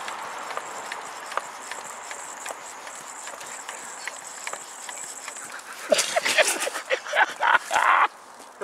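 A faint steady hiss with a few scattered clicks. About six seconds in comes a run of loud, close knocks and rustles with short bursts of a person's voice.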